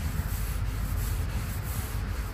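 A cloth pad rubbing oil stain into the face of a Japanese elm slab: a steady wiping, scuffing noise of fabric dragged over wood, over a constant low rumble.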